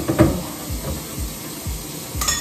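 Kitchen faucet running into a sink while soapy hands wash a small teapot: a steady hiss of water, with a brief knock just after the start. Soft background music plays underneath.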